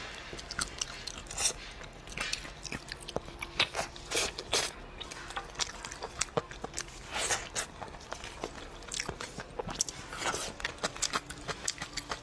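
Close-up eating sounds: wet chewing and smacking of soft, gelatinous stewed goat-leg skin, with many irregular sticky clicks as pieces are bitten and pulled apart.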